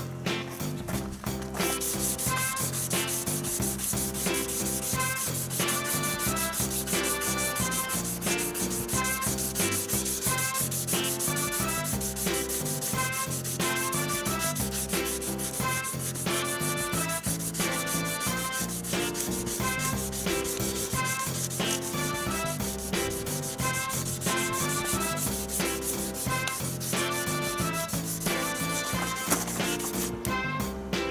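800-grit waterproof sandpaper rubbed by hand over a Chevrolet Blazer's painted bumper, sanding back the peeling clear coat: a steady scratching hiss that starts about a second and a half in. Background music with a repeating beat plays underneath.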